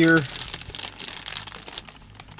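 Crinkling plastic packaging being handled, with many small crackling clicks, fading out about a second and a half in.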